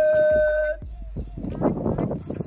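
Background music with a steady beat. During the first second, a man's voice holds a long, high yell that cuts off.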